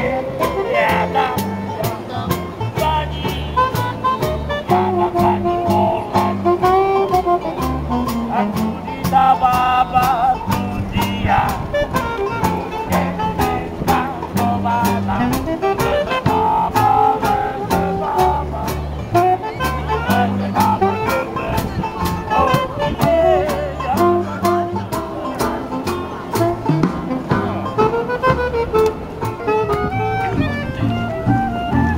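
A small street jazz band playing a swing tune: a double bass walking underneath, a saxophone carrying the melody, a banjo, and a steady ticking beat from the drums.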